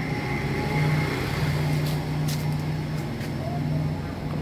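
A steady low engine hum that holds an even pitch.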